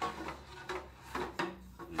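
Metal organ pipes being handled and laid side by side, knocking and clinking lightly against one another with some rubbing, several short knocks in two seconds.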